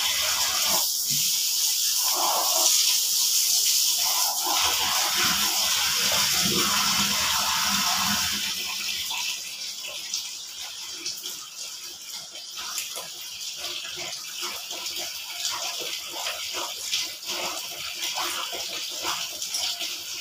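Tap water running steadily into a plastic basin, stopping about eight seconds in; after that, irregular splashing and sloshing as clothes are worked by hand in the basin water.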